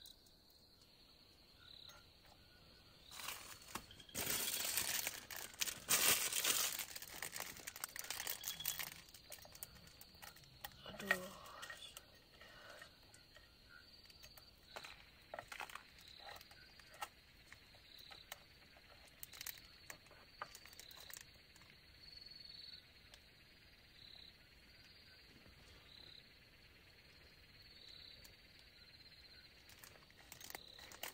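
Dry instant noodles crackling as they are broken up by hand in an aluminium mess tin, with plastic seasoning sachets crinkling, loudest in a run of crunching a few seconds in and then scattered small rustles and clicks. A steady high insect trill runs underneath.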